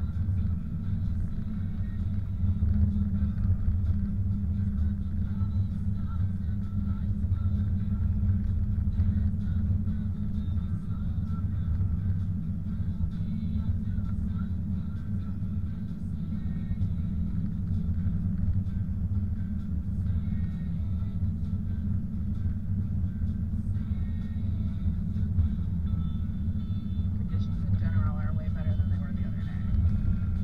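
Car driving on a snow-covered road, heard from inside the cabin: a steady low rumble of tyres and engine with no change through the drive.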